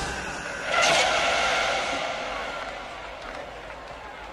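A film sound effect: a sudden rushing whoosh about a second in, fading away slowly over the next few seconds.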